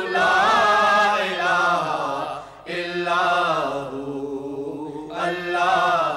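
Naat khwans singing a naat in long drawn-out melodic vowels, no clear words, with a short break about two and a half seconds in.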